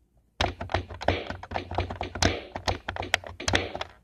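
A quick, irregular run of taps, clicks and thunks, several a second, starting about half a second in and stopping just before the end.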